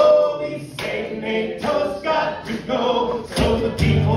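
A man singing into a microphone without accompaniment. Near the end an acoustic guitar comes in, strummed.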